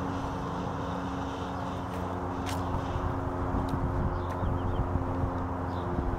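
A motor vehicle's engine running steadily with a low, even hum, over street traffic noise.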